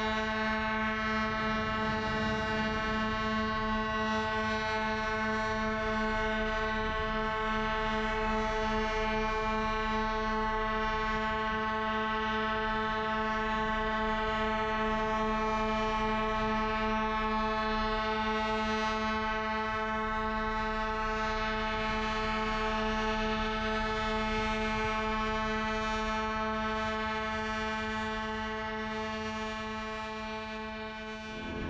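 Ships' horns held in one long, steady blast together, several horns sounding one unchanging chord with a slight beating between them, fading near the end.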